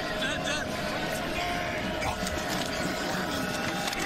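Stadium crowd noise from a large crowd in a football stadium: a steady wash of many indistinct voices with a faint held tone running through it, heard through the broadcast mix.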